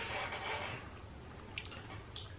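Faint handling noise of a small plastic energy-shot bottle being turned over in the hands, with a light click about one and a half seconds in.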